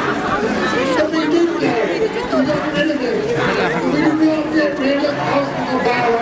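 Crowd chatter: many voices talking over one another, with no single voice standing out.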